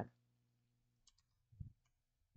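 Near silence with a few faint clicks from a computer's keyboard and mouse about a second in, then one soft low thump after about a second and a half.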